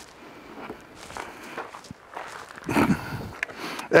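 Footsteps on dirt and gravel with light rustling and handling noises, and a brief muffled voice-like sound about three seconds in.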